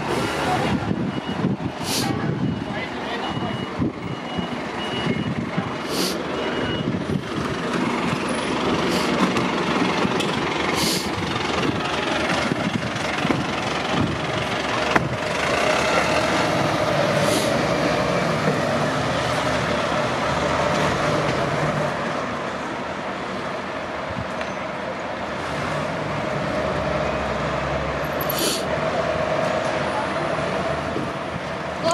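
Fire engine's diesel engine running close by, with a reversing beeper sounding a rapid series of beeps for the first seven seconds or so. Several short sharp air hisses, typical of air brakes, break in at intervals.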